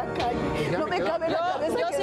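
Several people talking over one another in a heated argument, with background music underneath.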